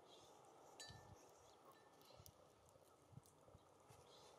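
Near silence, with a few faint taps of small birds on the feeders and a couple of brief, faint high chips about a second in.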